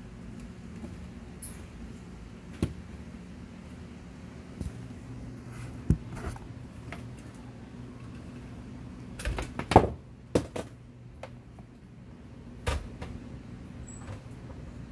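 Scattered knocks and clicks of handling over a steady low hum, the loudest a quick cluster of knocks about ten seconds in.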